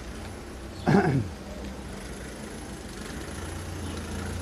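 A short call that falls in pitch about a second in, then a car engine running steadily, growing a little louder toward the end.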